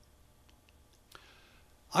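A pause in a man's talk: near silence with a few faint mouth clicks, then his voice starts again right at the end.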